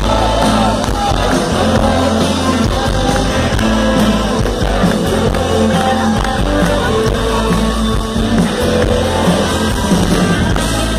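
Rock band playing live at full volume: electric guitars, bass and drums, with singing.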